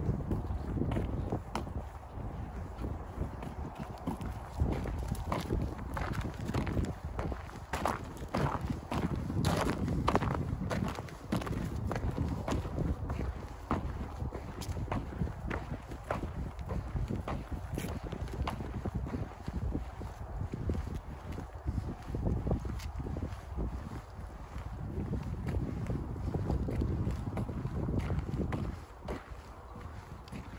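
Footsteps walking along a snowy, slushy paved path, about two steps a second, over a low rumble of wind on the microphone.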